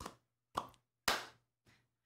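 Hand claps in the hula clapping pattern: two duller cupped-hand claps (upoho) and then a sharp flat-handed clap (pa'i), about half a second apart, with the third clap the loudest.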